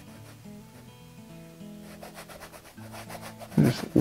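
Paintbrush scrubbing paint onto a canvas in short repeated strokes, mostly in the second half, over soft background music with long held notes.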